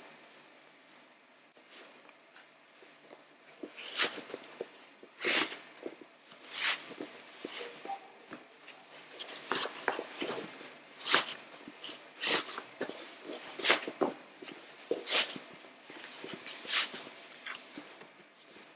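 Interfaced cotton fabric rustling in short, repeated swishes as the lining is pulled over and adjusted on the outer basket, one brief swish every second or so after a quiet start.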